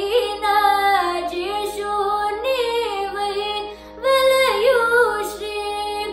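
A girl singing Carnatic music in raga Behag, her voice sliding and shaking through ornamented notes over a steady electronic tanpura drone. She takes a brief breath just before the fourth second, then sings on.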